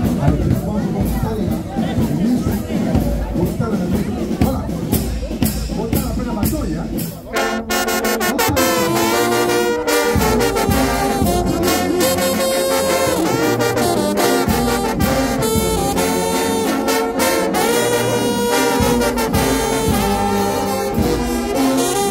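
Crowd voices, then about seven seconds in a brass band of trombones, trumpets, euphoniums and sousaphones strikes up loudly and plays on.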